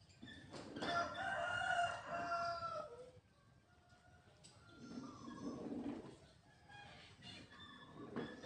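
A rooster crowing once: one long call of about two seconds that drops in pitch at the end.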